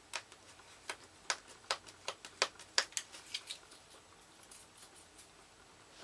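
Fingernail picking at and peeling a price sticker off a book cover: a quick run of small sharp clicks and crackles for the first three and a half seconds, then fainter, sparser ones.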